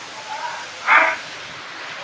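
A single sneeze by the man: a faint drawn-in "ah" and then one short, sharp burst about a second in.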